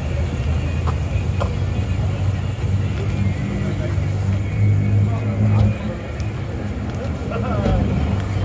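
Low, steady rumble of a car engine running close by, a little louder about halfway through, with people talking faintly in the background.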